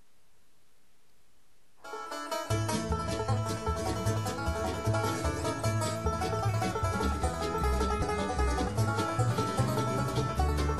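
Bluegrass band starting an instrumental intro about two seconds in, after faint hiss: acoustic guitar, banjo and mandolin picking, with upright bass joining a moment later. No singing yet.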